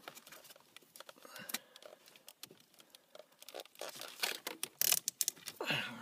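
Hands handling an electrical cable and plastic wiring: irregular clicks, rustling and crinkling, busier and louder about four to five seconds in.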